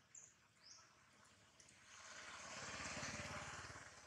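A motor vehicle's engine passing at a distance, swelling to a peak and fading over about two seconds in the second half, over faint bird chirps.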